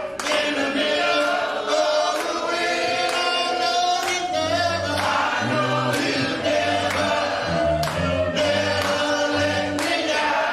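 Choir singing a gospel song, sustained chords with deep bass notes coming in about four and a half seconds in.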